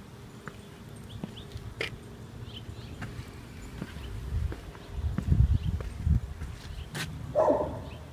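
Footsteps on pavement, with a low rumble about halfway through and a short dog vocalisation near the end.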